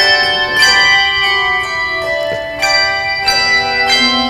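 Handbell choir ringing a hymn: chords of handbells struck about every half second, each ringing on and overlapping the next.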